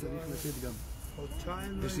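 Men's voices talking, with a brief hiss near the start.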